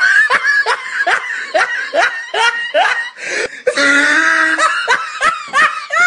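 A person laughing hard and high-pitched: a drawn-out squealing laugh, then a quick run of short, falling 'ha' bursts, another long squeal about four seconds in, and more bursts near the end.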